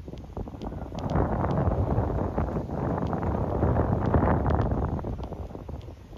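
Wind buffeting a microphone carried on a moving vehicle, a dense rumbling rush that grows loud about a second in and eases off near the end.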